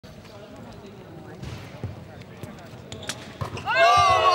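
A few scattered thuds of a basketball on a hardwood court, then near the end a sudden, loud, high-pitched cheering yell as the half-court shot goes in.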